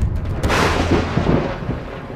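Thunderstorm sound effect: a low rumble, then a crack of thunder about half a second in that fades away, over falling rain.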